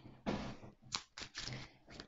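A deck of Lenormand cards being shuffled by hand: a short rustle of sliding cards, then several quick flicks and clicks of cards.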